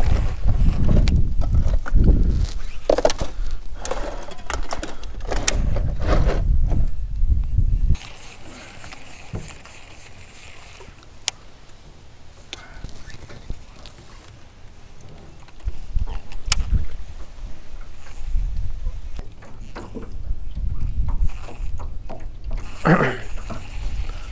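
Wind buffeting the microphone in a low, gusting rumble that drops away for several seconds in the middle, with a few sharp clicks and brief faint voices.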